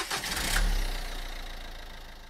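Car engine start, likely a sound effect: the engine catches with a low rumble about half a second in, then idles with an even pulse while fading out.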